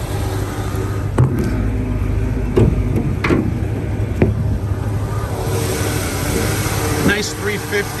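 A Chevrolet 350 V8 idling steadily, quiet, not loud. In the first half a few sharp knocks and clicks come as the hood is released and raised.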